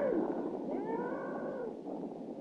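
A cartoon sound effect of a giant pterodactyl crying outside: wailing, animal-like screeches that rise and fall in pitch, several overlapping, growing fainter toward the end.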